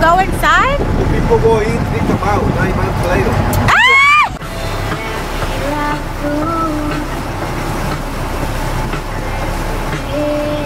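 Motor yacht under way, its engine and rushing water mixed with wind on the microphone, with voices over it. About four seconds in there is a loud drawn-out cry, then the sound drops abruptly to a quieter steady hum with a few held musical notes.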